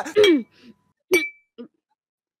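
Two short wordless vocal sounds from a person, one right at the start and a shorter one about a second in, the second followed by a brief high ringing tone.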